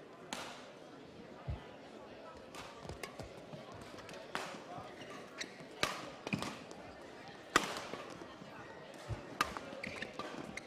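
A badminton rally: rackets strike the shuttlecock in irregular sharp cracks, the loudest about six and seven and a half seconds in. Between the hits, players' shoes thud and squeak on the court floor, all ringing in the large hall.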